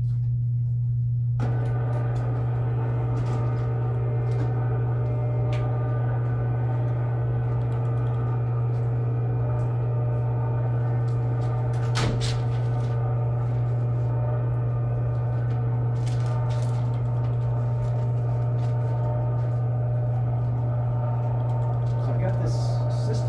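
Steady low room hum from machinery running, with a higher steady whine joining about a second and a half in. Scattered light clicks and taps sound over it, with one sharper knock about halfway through.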